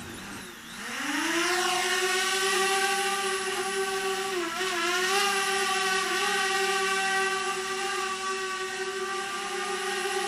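DJI quadcopter drone's propellers spinning up at takeoff with a rising whine, then holding a steady whine, with a brief dip in pitch about four and a half seconds in.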